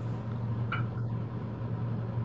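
A steady low hum under faint background noise, with one brief faint click about three-quarters of a second in.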